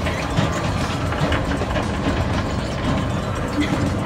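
An escalator running with a steady low rumble, with faint voices of people in the background.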